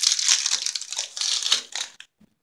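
Foil wrappers of toilet-cistern cleaning tablets crinkling and tearing as they are opened by hand: a dense, fast crackle that stops abruptly near the end.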